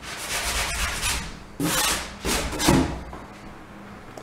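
Hand-held sanding sponge rubbed back and forth over dried filler on a wooden interior door, smoothing the patched holes. It rubs continuously for about a second, then makes three short strokes.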